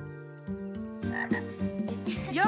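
Frogs croaking in a pond chorus, a steady run of low pulsed calls, with more calls crowding in about halfway through.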